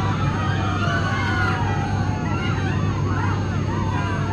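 Steady low drone of an airliner cabin, with wavering, sliding high tones over it.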